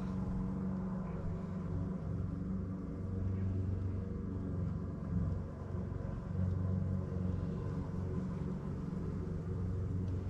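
A steady low machine hum, like a motor or engine running without a break, with a deep drone and a few steady tones above it.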